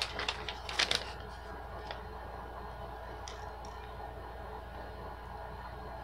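Packaging handled by hand: a few short crinkles and clicks in the first second, then only an occasional faint tick over a steady low hum.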